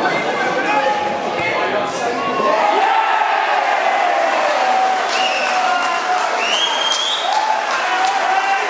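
Football crowd shouting and cheering a goal, with some clapping. Around two and a half seconds in, the noise turns into long, held shouts.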